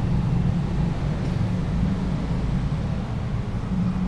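Steady low rumble and hum of background noise, with no distinct events.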